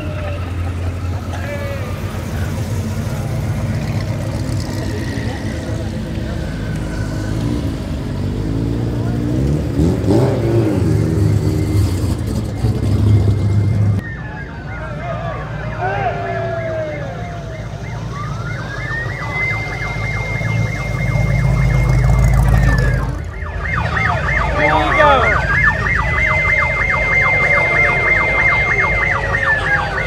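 Police-style siren on a replica Mad Max MFP pursuit car, wailing up to a held high note and sliding back down three times, with a fast warble under the last wail. Underneath, the cars' V8 engines rumble at low speed and rev briefly.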